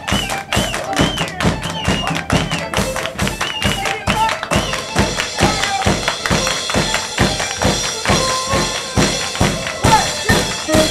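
Live band playing an upbeat song: a steady, fast beat of about four percussive hits a second, with voices and melodic lines over it. The arching melody of the first half gives way to steadier held notes about halfway through.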